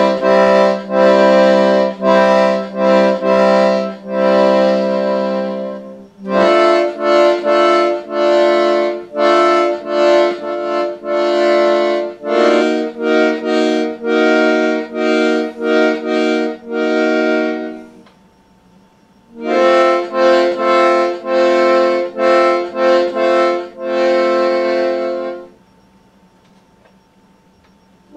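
Hohner Carmen II accordion playing sustained chords in quick repeated strokes, in three phrases with short pauses about six seconds in and again around eighteen seconds, stopping just before the end.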